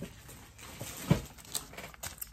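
Items being rummaged through and handled, with one sharp thump about a second in.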